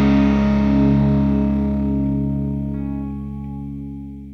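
Final chord of a punk rock song on distorted electric guitar, held and ringing out, fading steadily.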